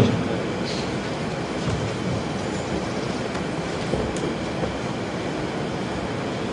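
Steady hiss and low rumble of room noise, even and unchanging, with no distinct sound event.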